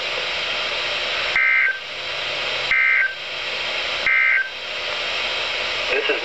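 NOAA Weather Radio end-of-message data bursts: three short, buzzy two-tone digital bursts about 1.4 seconds apart over steady radio static, marking the end of the severe thunderstorm warning broadcast.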